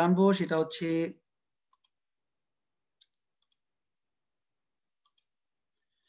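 A few faint, sharp clicks in near silence: one about two seconds in, a quick cluster of three or four about three seconds in, and a pair just after five seconds.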